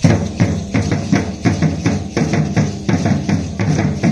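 Matachines dance music: a drum beating a quick, even rhythm of about three to four strikes a second, with the dancers' hand rattles shaking along.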